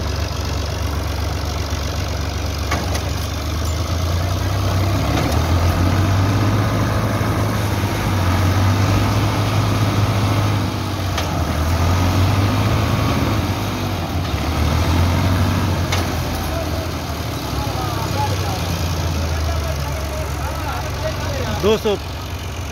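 Diesel tractor engines running hard under load, the revs swelling and easing several times, as a tractor bogged in loose sand strains to pull free and fails. Voices come in near the end.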